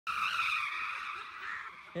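Rear tyres of a 1978 Ferrari converted to electric squealing in a smoky burnout, with no engine note under it. The screech wavers in pitch and slowly fades toward the end.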